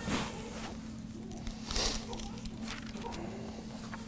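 Paper rustling as loose sheets and Bible pages are handled and turned at a pulpit, with two louder swishes, one right at the start and one just before two seconds in. A steady low hum runs underneath.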